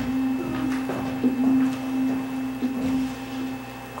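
A steady low held tone, the opening of a presentation video's soundtrack played over the hall's loudspeakers. It breaks briefly near the end.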